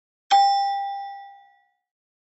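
A single bell-like ding sound effect, struck once about a third of a second in and ringing out over about a second and a half. It marks a tick landing in a checklist box.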